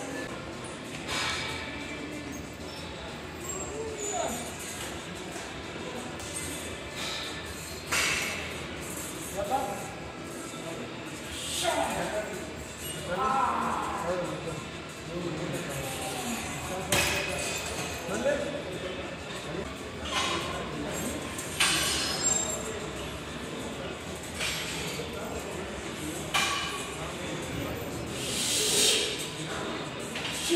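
Busy gym ambience with background voices and music, and a short sharp sound every three to four seconds from the pec deck machine being worked through its reps.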